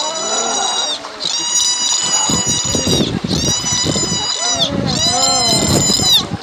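A dolphin at the surface making a series of high-pitched squealing whistles, each about a second long and held at one pitch before dipping at the end. People shout and water splashes underneath.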